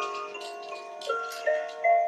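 Electronic lullaby tune from a baby swing: a simple melody of ringing, glockenspiel-like chime notes, one after another every few tenths of a second.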